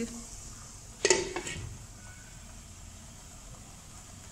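A glass pot lid clatters once onto a karahi about a second in. After that, keema and kachnar buds sizzle steadily and softly under the lid.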